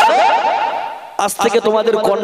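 A man's voice chanting a held note into a microphone, breaking it into a rapid warbling run of quick rising pitch wavers for about a second before going back to speaking.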